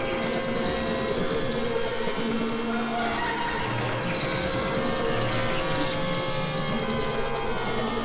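Experimental electronic drone and noise music from synthesizers: a dense, steady wash of many sustained tones with one held mid-pitched tone throughout and low notes swelling in and out.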